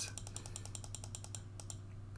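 Rapid, even run of computer mouse clicks, stopping just before the end: the move-up button is being clicked over and over to shift an item up a list.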